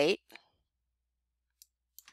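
End of a spoken word, then near silence broken by a few faint, sparse computer mouse and keyboard clicks.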